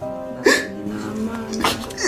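Soft background score of held chords, with a person crying: two short, catching sobs, one about half a second in and one near the end.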